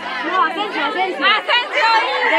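Several people talking and calling out over one another, with a low held note of the music fading out just over a second in.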